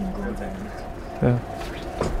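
Speech: a man's voice holds a level 'mmm' at the start, then says a short 'yeah' about a second in.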